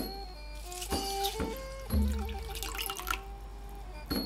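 Warm water being poured into a bowl over dried kaffir lime leaves to soak them, under background music with a stepping melody.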